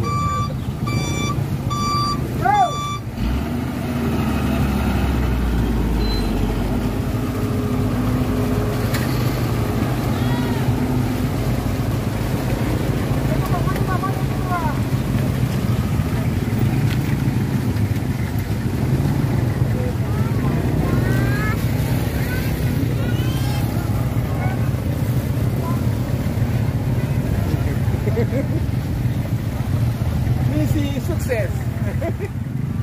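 A reversing alarm beeps repeatedly for the first three seconds or so, then stops. A heavy truck engine runs steadily throughout, with a deep rumble swelling a few seconds in, and people's voices in the background.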